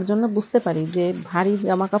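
A woman speaking in a steady stream, with a rubbing, scrubbing noise beneath her voice.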